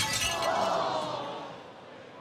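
Soft-tip dartboard machine's bust sound effect: a sudden burst that fades out over about a second and a half. It signals a bust: the last dart took the thrower past zero, so the turn does not count.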